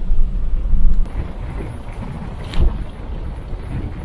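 Next-gen Ford Ranger driving on an unsealed dirt road: a steady low rumble of tyres and drivetrain, with wind buffeting the microphone, loudest in the first second.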